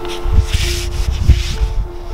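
Two short bursts of scraping, rubbing noise, about half a second and a second and a half in, over soft background music with held notes.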